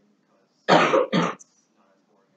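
A person coughing twice in quick succession, loud and close, a little under a second in.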